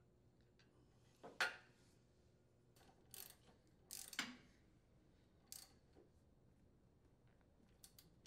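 A wrench working the steering-link mounting nuts: a few short metallic clicks and clinks spread over several seconds, with near silence between them.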